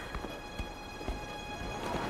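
Soft footsteps, a light thump about every half second.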